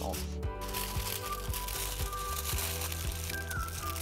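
Aluminium foil crinkling as a sheet is pressed and folded down over a silicone ice-cube tray, stopping a little before the end, over background music with a steady beat.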